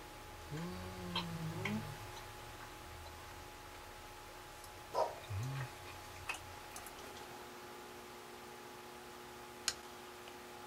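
A person's low hums of appreciation while eating, "mmm": one drawn-out, wavering hum about half a second in and a shorter one about five seconds in. A few light clicks fall between them and near the end.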